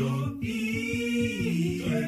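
Greek song: a voice holds one long sung note over a low backing line, then breaks off shortly before the end.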